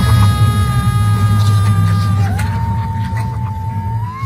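Held high electronic tones over a steady low hum. Two tones sound together for about two seconds, then a single tone dips, rises again and holds to the end.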